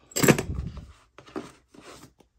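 Hand tools clattering: a set of long driver bits clinks loudly as it is set down, then two shorter, quieter clinks and rustles as a hand rummages among tools in a fabric tool tote.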